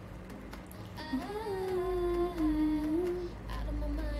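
A woman humming a melody, mostly one long wavering note from about a second in until past three seconds, over faint background music.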